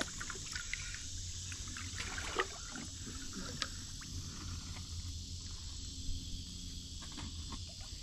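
Low water sloshing and a few small splashes as an arm reaches into a submerged hole under a creek rock, over a steady background hiss.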